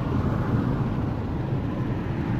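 Steady road noise inside a moving car's cabin: tyre and engine noise from driving on a highway.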